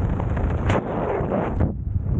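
Airflow buffeting the camera microphone during parachute canopy flight: a steady, heavy rumble with a sharp burst about two-thirds of a second in and a brief lull near the end.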